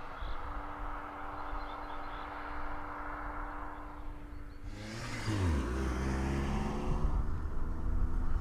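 Mazda3 1.6-litre turbodiesel engine running at a steady pitch. About five seconds in, the engine note drops sharply, then it runs on louder and lower with more rushing noise.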